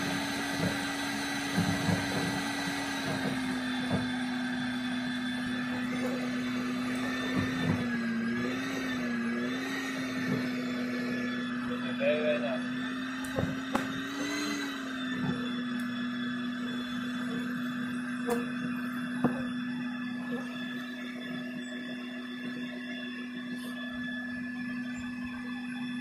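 Live bee-removal vacuum running with a steady whine as bees are sucked through its hose; the pitch steps slightly lower a few seconds in and wavers briefly twice around the middle as the suction load shifts.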